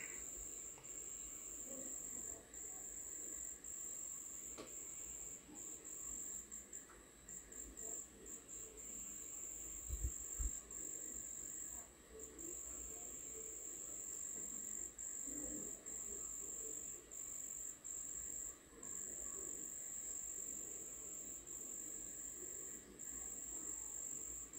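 Faint, steady high-pitched trill that breaks off briefly now and then, over a low background murmur, with one soft low thump about ten seconds in.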